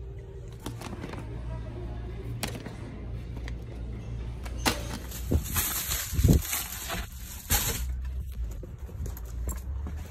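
Inside a car's cabin, the air conditioning blows over a steady low engine hum, with the fan's hiss getting louder about halfway through. A few knocks and thumps come near the middle.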